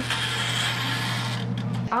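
Toaster oven's mechanical timer dial being wound up, a continuous ratcheting whir over a low steady hum, stopping abruptly near the end.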